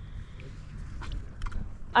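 Low wind rumble on the microphone, with a few faint clicks.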